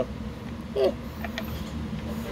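A low, steady hum, with a brief spoken hesitation sound just before a second in and a couple of faint ticks soon after.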